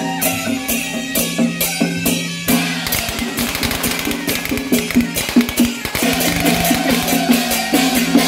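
Taiwanese temple-procession band playing on the march: a suona carries a shrill melody over clashing hand cymbals and drum beats. The cymbal strikes come thick and fast through the middle of the stretch, then the reed melody comes back to the fore.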